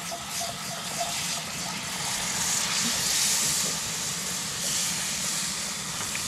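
Cold milk poured into a hot butter-and-flour roux in a cast-iron skillet, hissing and sizzling steadily, the hiss swelling louder in the middle as more milk goes in.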